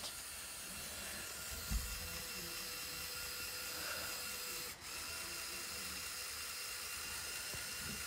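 Lego Technic 42100 Liebherr R 9800's electric motor and gearing whirring steadily as the excavator's bucket tilts, with a small knock about two seconds in and a brief break near the middle.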